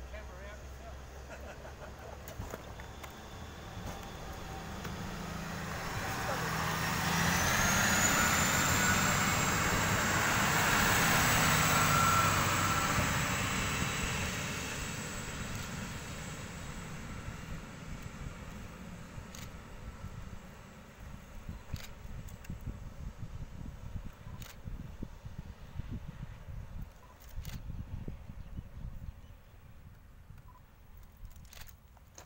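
A two-car NSW TrainLink Endeavour diesel railcar set passes on the line and runs away into the distance. Its low engine rumble and wheel noise build up, with a high whine that rises and then holds, peak about ten seconds in, and then fade. A few sharp clicks follow in the second half.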